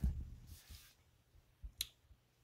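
A hardcover book being handled: soft low bumps, a short brush of the hand across the glossy cover, then one sharp click near the end.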